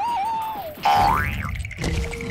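Cartoon fight sound effects: a wavering, falling tone over low thuds, then about a second in a loud boing-like glide that sweeps up in pitch.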